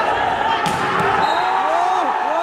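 A volleyball being hit hard: two sharp smacks about a third of a second apart, around the middle, over the noise of a crowded hall.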